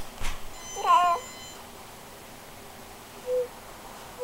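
A baby's short, high-pitched squeal about a second in, followed near the end by a brief low hum from the same infant.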